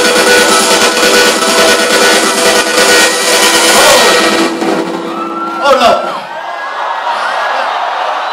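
Electronic dance music playing loud over a concert sound system, cutting off about four and a half seconds in. A crowd then cheers and whoops, with a loud shout just before the middle of the cheering.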